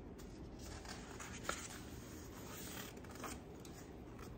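Pages of a picture book being turned by hand: soft paper swishes and rustles, with a short sharp tap about one and a half seconds in.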